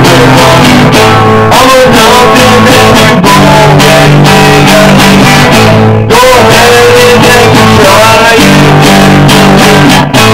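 Stratocaster-style electric guitar with a clean tone, strummed chords changing every second or two, recorded very loud.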